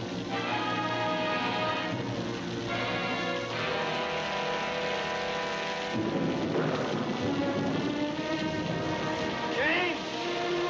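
Orchestral film score holding sustained chords over the steady hiss of heavy rain. A rumble of thunder swells in about six seconds in.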